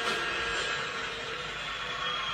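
Steady, even noise from the playback of the televised dance show, without clear speech or a distinct musical beat.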